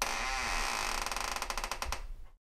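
A drawn-out creak sound effect: a short wavering squeak near the start, then a run of small clicks that come faster and faster toward the end.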